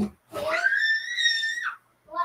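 A young child's high-pitched squeal, rising quickly and then held for about a second and a half before breaking off.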